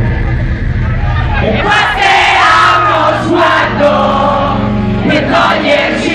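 A live rock band plays loudly, with electric guitar and drums, while a crowd sings along and shouts over it.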